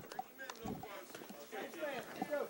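Faint voices of spectators and players around a youth baseball field, with a few light knocks.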